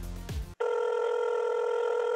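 Telephone call tone: a steady electronic tone that starts suddenly about half a second in, as the background music cuts off, and holds without a break.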